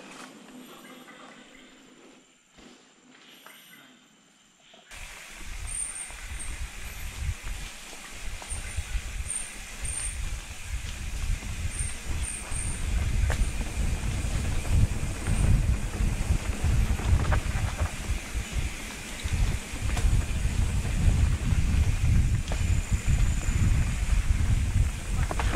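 Mountain bike riding down a dirt forest trail, heard from a camera on the bike: low rumble and wind buffeting from the tyres and frame over rough ground. It starts about five seconds in after a quiet stretch and grows louder as the bike picks up speed.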